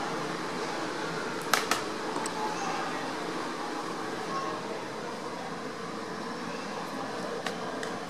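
Room tone with a steady fan hum, broken by two quick clicks about a second and a half in and a fainter one near the end.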